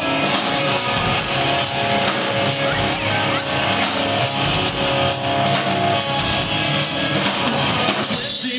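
Rock band playing live: electric guitars and a drum kit at full volume, with steady drum beats under held guitar chords.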